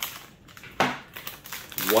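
Foil blind-bag pack being handled and cut open: the wrapper crinkles, with a sharp snip a little under a second in and a few lighter clicks after it.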